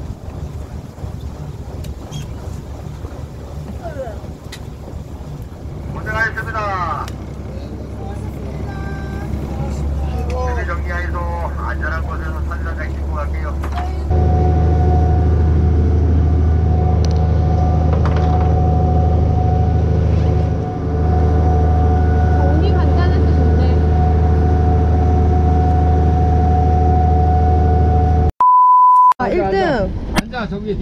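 A fishing boat's engine running steadily under way, with voices over it at first. About halfway through it becomes a louder, even drone with a high whine. Near the end a short beep sounds on its own.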